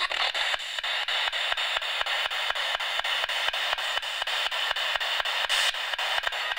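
Radio static hissing, cut by rapid, evenly spaced clicks as a radio scanner, a spirit box, sweeps through stations.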